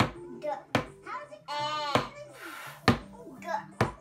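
A wooden pointer stick tapping against a wall chart, sharp taps about once a second as it moves from letter to letter.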